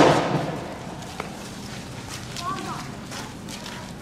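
A single loud bang from tear gas being fired, trailing off over about half a second, followed by a brief shout from the protesters.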